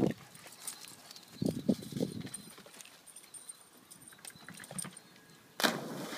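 A dog's running footfalls as faint scattered clicks, then, near the end, a sudden loud splash as a German Shorthaired Pointer leaps into a pond.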